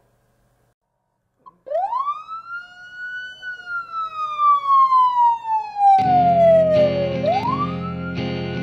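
A siren wailing: its pitch rises over about a second and a half, sinks slowly for about four seconds, then rises again near the end. About six seconds in, music enters with a steady sustained chord beneath it.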